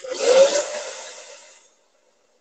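Hand-held hair dryer switched on to dry a glued paper napkin on a decoupage board. A sudden rush of blown air is loudest about half a second in and fades away by just under two seconds, leaving a faint steady hum.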